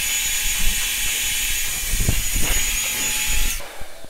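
Handheld hair dryer blowing, a steady rush of air with a thin high whine over it, switched off near the end.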